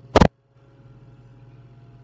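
A sharp double knock of the close microphone being handled just after the start. Then a brief dead gap and a steady low electrical hum with faint hiss from the mic; no cat is heard eating yet.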